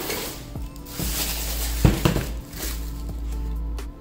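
A cardboard shoebox being opened and tissue paper rustling as a rubber slide sandal is lifted out, with one sharp knock about two seconds in, over steady background music.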